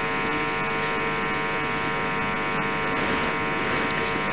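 A steady electrical buzz at an even level, such as a telephone-line tone heard over the call-in audio feed, starting just as speech stops.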